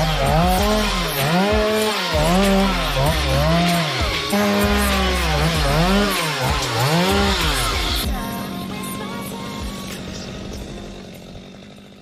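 Chainsaw cutting into a milkwood tree trunk, its engine pitch rising and falling over and over as the chain loads and clears in the cut. The saw fades out over the last few seconds.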